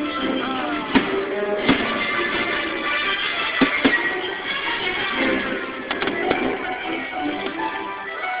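Fireworks show music playing over park loudspeakers, with several sharp firework bangs about a second, a second and a half, three and a half and four seconds in, and again near six seconds. The sound is thin, recorded on a phone's microphone.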